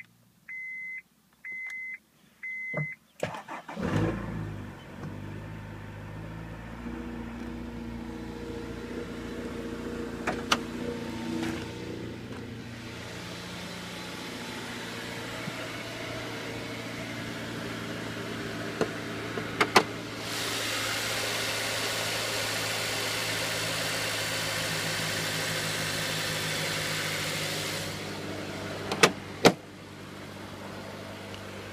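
A car's dash chime beeps several times, then the Honda S2000's swapped-in F22 four-cylinder engine cranks and starts about three seconds in and settles to a steady idle. Later a steady hiss rises over the idle for several seconds, and a few sharp clicks come near the end.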